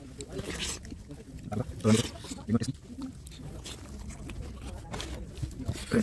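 A man's voice in a few short, indistinct bursts, with scattered small clicks and knocks.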